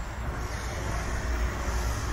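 Wind rumbling on the microphone over a steady outdoor hiss.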